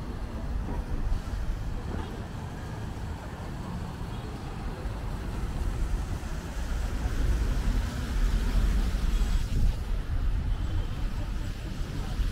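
Steady road traffic noise from cars passing on a busy multi-lane road, growing louder in the second half as vehicles pass closer.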